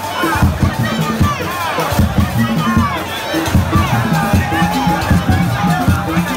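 Live Simpa dance music: drums beating a fast, driving rhythm, with a crowd shouting and cheering over it.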